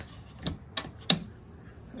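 Metal folding shelf brackets under a plywood foldout table clicking and knocking as the board is lifted and folded by hand: three sharp clicks in about a second, the last the loudest.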